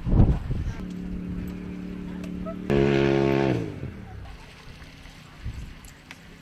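A watercraft engine out on the lake running with a steady hum. Near the middle it swells to a louder, fuller note for about a second, then its pitch drops away and it settles back to a faint drone.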